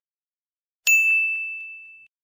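A single notification-bell ding, struck just under a second in. It rings with one clear high tone that fades out over about a second.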